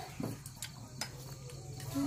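A few faint, sharp clicks of a plastic spoon against a plate, with quiet eating sounds, over a low steady hum.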